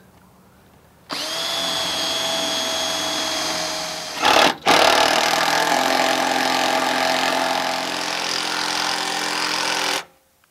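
Power drill running after a quiet first second: about three seconds of drilling a pilot hole through the shade housing, then, after a brief break with a sharp knock, a longer steady run driving a lag screw through the housing with a socket bit.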